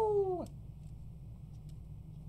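The end of a man's long, high-pitched "woo!" cheer, sliding slowly down in pitch and cutting off about half a second in. After it, low room hum with a couple of faint clicks.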